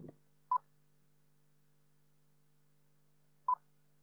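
Two short, single-pitched beeps about three seconds apart, from a quiz countdown timer sound effect, with near silence between them.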